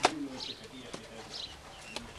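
Doves cooing in low, rising-and-falling calls, with small birds chirping. A sharp knock at the start is the loudest sound, and a lighter tick follows about a second in.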